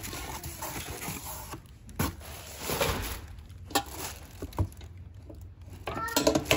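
Plastic wrapping and cardboard rustling as an enamel tray is worked out of its packing box by hand, with a few light knocks about two, three and a half and four and a half seconds in.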